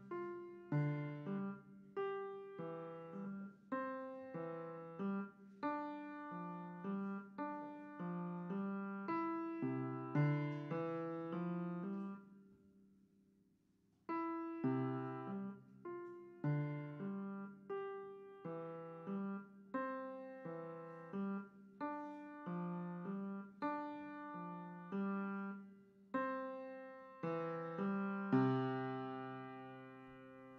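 Piano playing a slow, simple beginner piece, with a note or chord about every second. The playing breaks off for about two seconds near the middle, then resumes and ends on a held chord.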